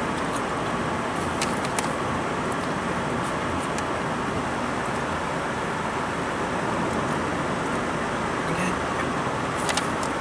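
Steady road and engine noise inside a moving car's cabin, with a few faint light ticks.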